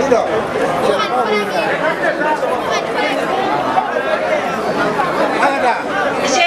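Crowd of students chattering, many voices talking at once and overlapping.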